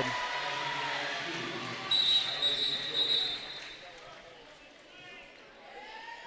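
Gymnasium sounds during a basketball game: crowd noise fading after a made basket, with ball bounces. About two seconds in, a referee's whistle is blown for about a second.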